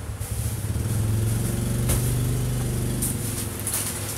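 A motor engine running with a low, steady hum that swells about half a second in and eases off near the end, with a single sharp click about two seconds in.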